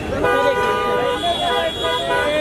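A car horn sounds one steady note for about a second, amid the voices of a crowd.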